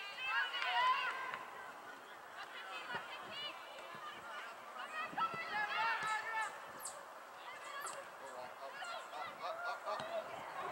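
Geese honking, several birds calling over one another in repeated bouts of short arched honks, loudest in the first second and a half.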